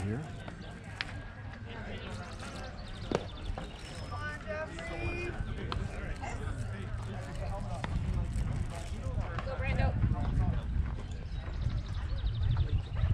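Open ball-field ambience: distant voices of players and spectators, with two sharp pops about a second in and a few seconds in, typical of a baseball smacking into a catcher's mitt on warm-up pitches. Low wind rumble on the microphone grows in the second half.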